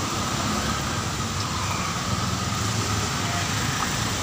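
Steady street noise of traffic on a rain-wet road: a low engine rumble under an even hiss of tyres and rain.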